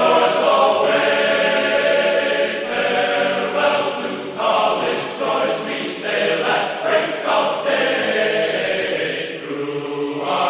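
Background music: a choir singing held notes, with no beat.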